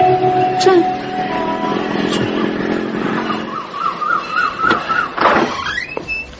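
Road traffic sound effect with vehicles running, and a wavering, siren-like warble in the second half.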